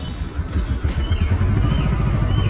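Motorcycle engine running under way, its low note and loudness building through the moment.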